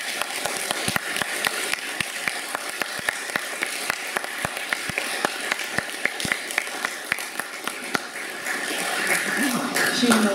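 Audience applauding in a hall: many separate hand claps, thinning out near the end.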